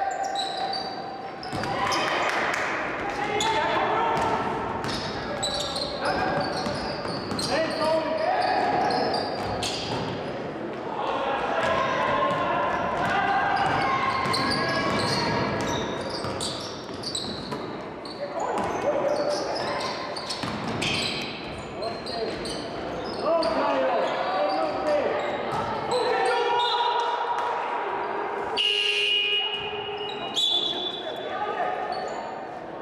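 Basketball game in a large sports hall: the ball bouncing on the hardwood floor and players' voices calling out, echoing in the hall. A short high whistle blast about a second before the end, as play stops.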